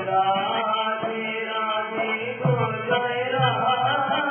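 Devotional kirtan: a sung chant with held, slowly moving notes over repeated low hand-drum strokes.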